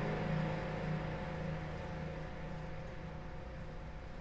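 Closing notes of a song fading out: sustained low tones die away into a faint hiss.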